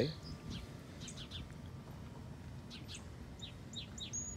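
Songbirds chirping quietly: short, high chirps in a few small groups, over a low steady outdoor background.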